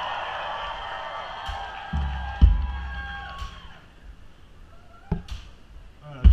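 Live band on stage, amplified through the PA: held instrument notes ring and fade away over about four seconds, with a few deep low thuds, two close together midway and a softer one near the end.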